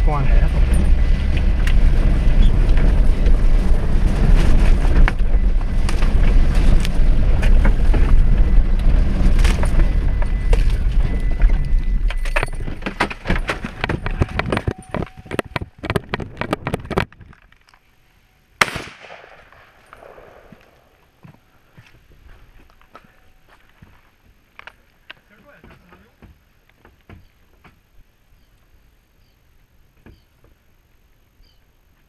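A vehicle driving on a rough dirt road, heard from inside the cab: steady engine and road noise with constant rattles and knocks. The noise fades and stops abruptly a little past halfway as the vehicle halts. A single sharp bang follows a moment later, and then it is quiet with faint scattered sounds.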